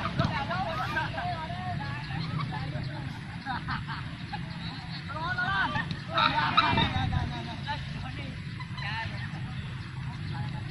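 Distant shouts and calls of footballers across an open field, several overlapping voices. The calls come in clusters and are loudest a little past the middle, over a steady low background rumble.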